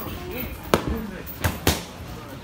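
Boxing gloves smacking focus mitts: three sharp punches, one a little before the middle and two in quick succession near the end.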